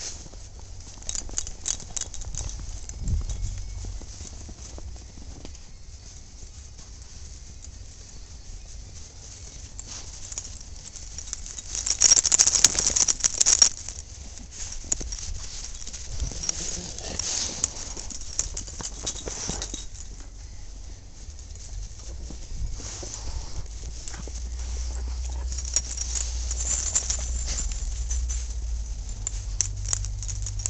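Footsteps crunching through snow, irregular, with a louder spell of crunching about twelve seconds in. A low rumble builds near the end.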